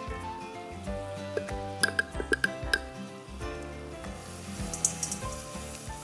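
Flour sizzling as it is stirred into hot melted butter in a pot, with a few sharp clinks of the spoon against the pan about two seconds in, over soft background music.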